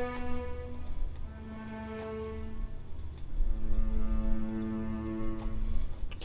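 Sustained bowed-string notes from a sampled chamber strings instrument, sounding one pitch after another, each held for a second or two over a low steady rumble, with a few faint clicks in between.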